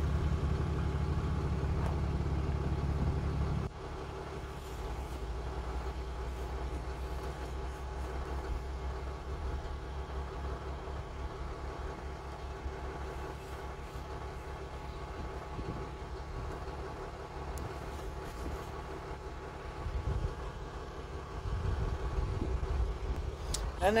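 A truck's diesel engine idling: a steady hum with a constant pitch, its low rumble dropping a little about four seconds in.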